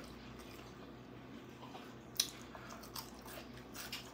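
A person chewing a bite of deep-fried liver: quiet, wet mouth clicks and smacks, the sharpest about halfway through, with a few softer ones after.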